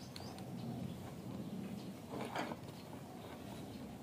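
Faint clicks and taps of a plastic take-apart toy truck being worked with a plastic toy screwdriver, with one short voice-like sound a little after two seconds in.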